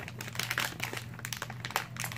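Plastic packaging crinkling and rustling in irregular bursts as hands squeeze a plastic pouch and packaged items down into a woven basket.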